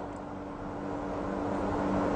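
Steady background hiss with a low steady hum, slowly growing louder.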